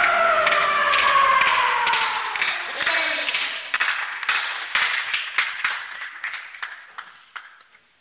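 A kendo fighter's long kiai shout, falling in pitch and fading over about three seconds, over scattered hand clapping that thins out and dies away near the end.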